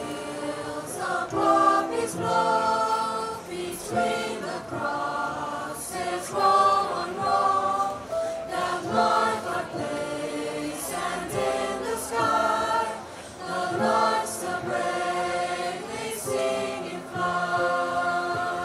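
Mixed high-school choir of boys' and girls' voices singing together in phrases of held notes, with a brief dip in the singing about 13 seconds in.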